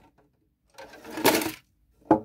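Shredded CD and plastic card pieces clattering as they are tipped out of a clear plastic shredder bin onto a table, in one burst lasting under a second.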